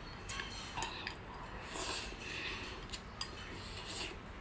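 Close-up eating sounds: chewing food, with a handful of short light clicks of chopsticks against a porcelain bowl.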